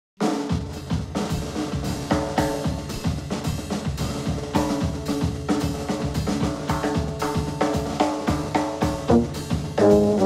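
Big band jazz opening: the drum kit plays a steady beat over sustained pitched notes from the band, starting abruptly right at the beginning.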